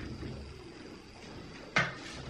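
Quiet barn room tone with a faint low hum, broken by one sharp knock near the end.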